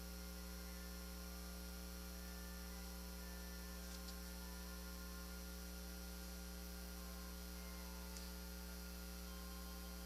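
Faint, steady electrical mains hum, with two small clicks about four and eight seconds in.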